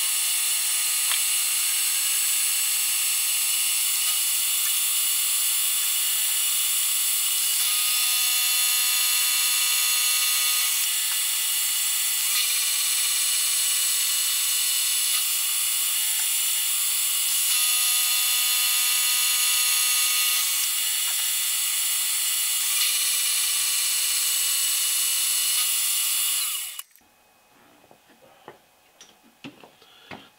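Vertical milling machine with an end mill cutting a groove in an aluminium fixture plate, a steady high-pitched cutting sound. A lower tone joins four times for about three seconds each, and the machine shuts off near the end.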